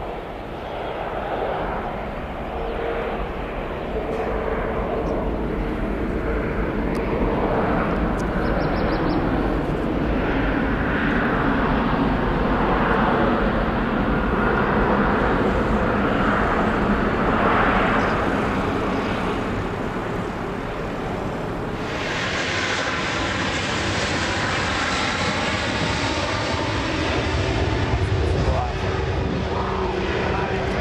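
Jet engines of a Boeing 747-8 running on the ground, a steady roar with a faint whine that grows louder over the first dozen seconds as the airliner rolls. About two-thirds of the way through, the jet noise changes abruptly to a brighter, hissier roar.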